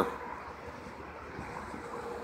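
Faint steady background noise, an even rumble and hiss with no distinct event, joined by a faint steady hum about halfway through.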